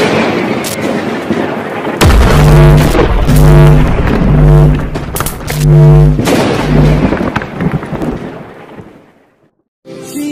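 Cinematic logo-intro sound effects: a booming impact with a long rushing tail, then a deeper bass hit about two seconds in. A low pitched tone follows, swelling and pulsing about five times before it fades out near the end.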